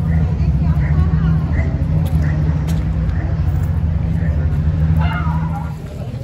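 A motor vehicle engine running steadily close by, a low rumble that fades out shortly before the end, with faint voices of passers-by over it.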